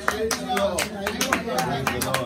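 A small group of people clapping their hands in a quick, steady rhythm, with voices over the claps.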